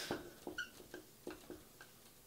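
Dry-erase marker writing on a whiteboard: a run of faint short strokes, with a brief squeak of the tip about half a second in.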